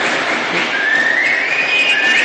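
A long whistled tone from a spectator that glides upward in pitch for about a second and a half, over the steady noise of the arena crowd.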